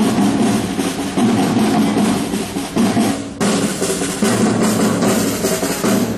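Several marching snare drums playing a steady parade beat together.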